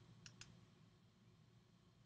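Near silence with two faint, quick clicks close together early on, a computer mouse clicking a tab.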